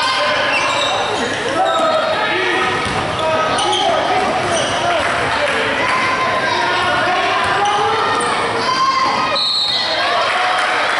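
Live basketball game in a gymnasium: a ball being dribbled on the hardwood court, with players and spectators calling out over one another, echoing in the large hall.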